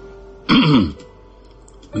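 A man's single short vocal sound about half a second in, falling in pitch, over faint steady background music.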